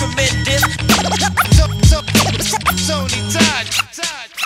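Hip-hop track's hook: turntable scratches of short cut-up samples over a drum beat and bass line. The beat and bass drop out just before the end, leaving the scratches alone.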